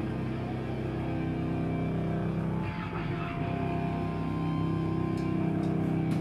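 Live rock band on stage holding a sustained, heavily fuzzed electric guitar and bass drone, the held notes shifting about halfway through, with a few short cymbal taps near the end.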